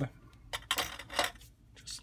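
Cardstock pieces being handled and shifted on a craft mat: a brief rustle and light clatter of paper and small parts, strongest from about half a second to a second and a half in.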